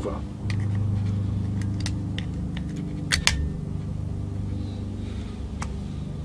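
Small metal clicks and scrapes of a screwdriver-type pry tool working at the welded metal tab on a starter solenoid's plastic top cover, about seven sharp ticks with the loudest pair about three seconds in. A steady low hum runs underneath.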